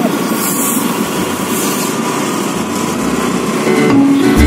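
A small two-wheeler engine running steadily while riding, with road noise.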